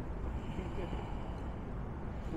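Steady low outdoor background rumble with faint voices murmuring in the background.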